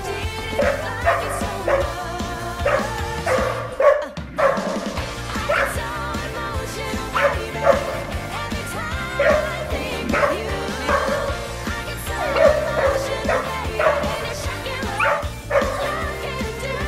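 A young search-and-rescue dog barking repeatedly in short bursts at a person hidden in rubble, the bark alert that signals a find, over background music.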